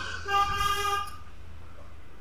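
A vehicle horn sounding once: a single steady-pitched honk lasting under a second, starting about a quarter-second in.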